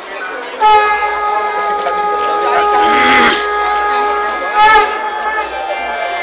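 A loud, steady horn-like tone starts suddenly about half a second in and holds for about five seconds, swelling once in the middle and wavering briefly near the end, over voices.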